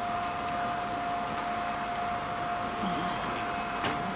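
Building-site background: a steady mechanical drone with a constant hum, as of site machinery running, with a couple of sharp clinks near the end.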